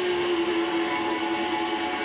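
Electric guitar holding one long sustained note that sags slightly in pitch, with no drums under it.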